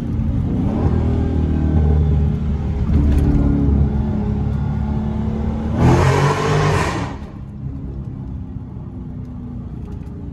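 Dodge Charger SRT 392's 6.4-litre HEMI V8 accelerating hard, its note climbing for several seconds. About six seconds in, while the car passes through a tunnel, there is a loud, bright burst of engine and exhaust sound lasting about a second; the engine then drops back to a quieter cruise.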